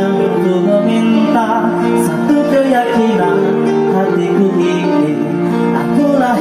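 A man singing a melodic song into a handheld microphone, backed by an electronic keyboard that plays a plucked, guitar-like accompaniment. The music goes on without a break.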